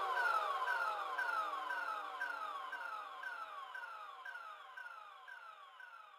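Electronic siren-like sweep effect at the tail of a dance track: a falling 'pew' repeating about twice a second over a slow downward glide, fading out steadily.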